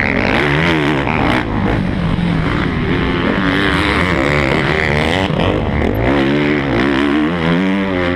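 Motocross dirt bike engine heard close up from the rider's helmet, revving up and dropping back again and again as the rider accelerates out of turns and shifts.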